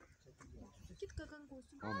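Faint murmured speech, then near the end a woman's voice cries out "Ay mama" in grief, a high, strong cry.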